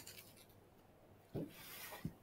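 Faint rustling and rubbing of clothing against a laptop microphone as a person moves in close to it, with a soft thump about a second and a half in.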